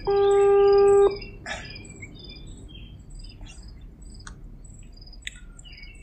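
Birds chirping with short, high, repeated calls in a garden. A loud steady beep, lasting about a second, cuts in at the start and stops abruptly; it is the loudest sound.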